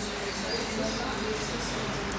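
Faint voices in the background during a pause in the preaching, with no loud sound in the foreground.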